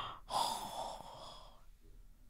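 A woman breathing out softly into a close microphone: a short breath, then a longer breathy exhale that fades out about a second and a half in.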